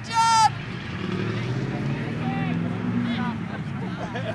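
A short shout right at the start, then a motor engine running steadily with a low, even hum, under faint voices.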